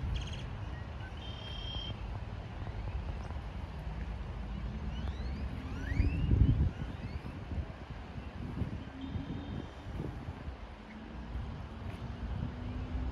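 Outdoor riverside ambience: a low wind rumble on the microphone with a stronger gust about halfway through, a distant engine hum in the second half, and a few short rising bird chirps.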